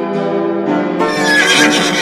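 A horse whinny sound effect about a second in, over keyboard music with a steady melody.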